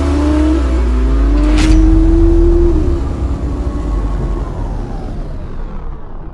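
Motorboat engine running with a deep rumble, its pitch rising slowly as it speeds up, with a short sharp hiss about one and a half seconds in. It then fades out gradually toward the end.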